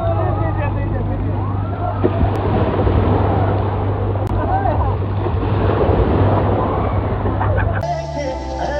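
Crowd of people shouting and whooping in a wave pool, with waves splashing and water churning, over a steady low hum. Music cuts in near the end.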